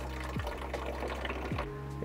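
Faint trickle of water from a handheld shower head into a plastic water jug, over quiet background music with steady held notes. It is the weak gravity-only flow of a solar shower tank with no air pressure left in it.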